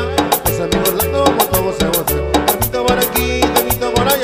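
Instrumental passage of a cumbia song with a steady dance beat: sharp percussion on every beat, bass notes changing about every half second, and a melody line over them.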